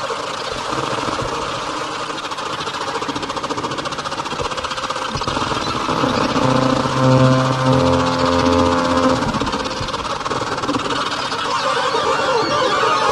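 Atonal electronic music: a dense noise texture with a fine rapid ripple, joined about six seconds in by a cluster of steady low tones that fades out by about nine seconds.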